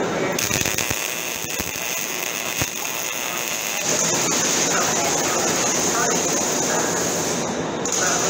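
MIG welding arc crackling steadily for about three and a half seconds, starting about four seconds in and stopping just before the end. Before the arc is struck there is a quieter steady noise with a thin high whine.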